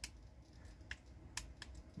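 Faint, sharp plastic clicks from the RadioMaster MT12 radio transmitter's controls being pressed: one at the start, then two more about a second in.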